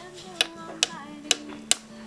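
Chalk tapped against a chalkboard four times, about half a second apart: sharp, short clicks as eye dots are made inside a drawn circle.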